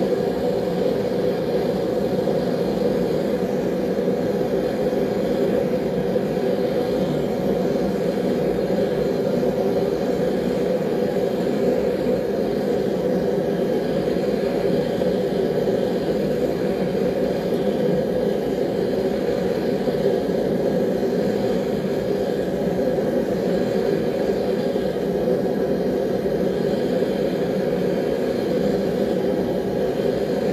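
Forge running with a steady, unbroken rushing noise while a knife blade heats inside it, waiting for the steel's tip and heel to reach non-magnetic temperature before the oil quench.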